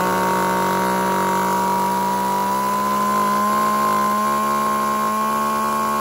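ECHO 332 chainsaw's 33 cc two-stroke engine revved up and held steadily at high revs under the throttle, its pitch holding nearly level with a slight rise.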